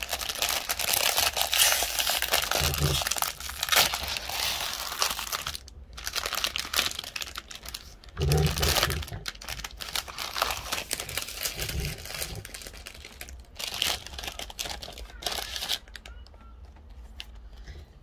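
Shiny plastic-and-foil wrapper of a trading card pack being torn open and crinkled while the cards are pulled out of it. The crinkling comes in long, dense stretches with short breaks and eases off near the end.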